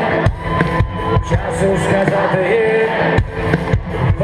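Live rock band playing through a large arena PA, with a singer's voice over steady drum beats, heard from within the crowd.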